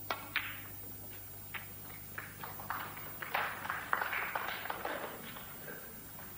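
Two sharp clicks of snooker balls right at the start as a shot is played at the black, then a scatter of lighter clicks and taps that grows denser in the middle.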